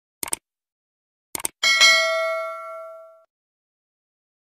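Subscribe-button sound effect: a quick mouse click, another click about a second later, then a bright notification-bell ding that rings and fades over about a second and a half.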